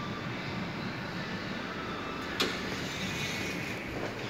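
Sigma passenger elevator arriving and its doors opening: a steady background hum, with a single sharp clack about two and a half seconds in as the door mechanism releases.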